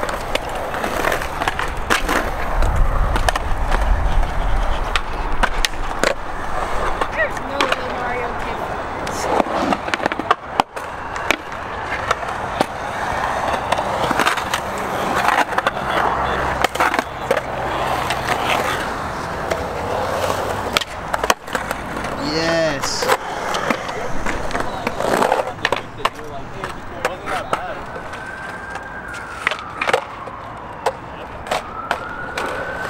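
Skateboards on a concrete skatepark: urethane wheels rolling over the concrete, with repeated sharp pops and board-slap landings scattered through it.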